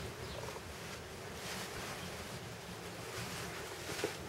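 Quiet, steady background noise, a faint even hiss with no distinct sounds standing out.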